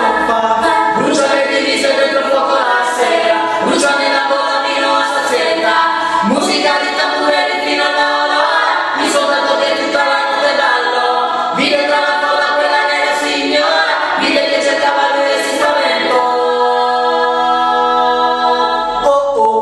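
A three-voice a cappella group, two women and a man, singing in close harmony without instruments, with sharp accents about every second and a half.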